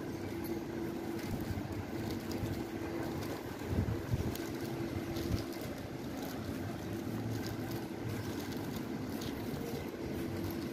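Outdoor ambience with wind buffeting the microphone, in stronger gusts about four and five seconds in, over a low rumble and a steady hum that fades out about halfway.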